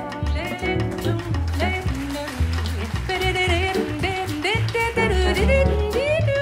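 Live jazz combo playing a swing number: double bass, drums, piano and trombone, with a lead line that bends and slides in pitch over a walking bass.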